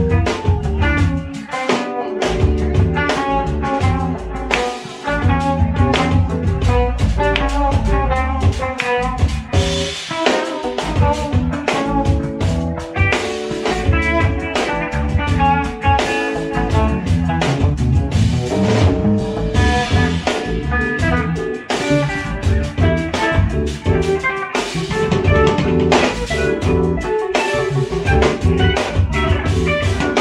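Live band playing a soul groove: a guitar plays melodic single-note lines over drum kit, bass and keys.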